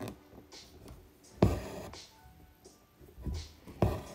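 An embroidery needle punching through fabric held taut in a wooden hoop, with two sharp taps about a second and a half in and near the end, and short hissing pulls of six-strand floss being drawn through between them.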